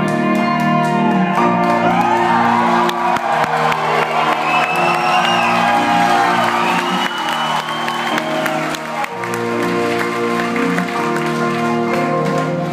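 A live band plays with piano and sustained chords while the audience cheers and claps over the music.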